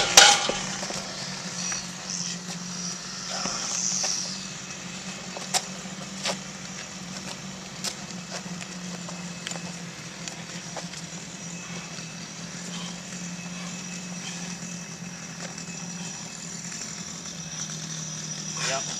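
A 256-lb atlas stone drops from over the bar and lands with a thud at the very start. After that, only a steady low hum and a few faint clicks.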